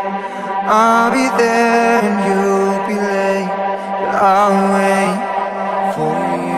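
Melodic electronic dance music in a passage without drums: a held low drone under a chant-like vocal line whose pitch bends about a second in and again around four seconds in.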